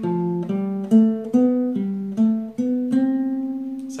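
Nylon-string classical guitar playing single plucked notes of the C major scale, one after another at about two notes a second, in a four-note scale pattern. The last note, about three seconds in, is left ringing for about a second.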